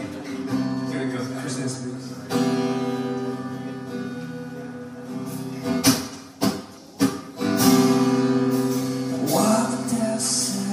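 Acoustic guitar strumming chords, each left to ring. A few sharp hits come about six to seven seconds in, and a fresh chord follows them.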